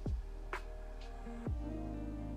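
Soft lo-fi background music with sustained notes, sliding down in pitch once at the start and again about one and a half seconds in.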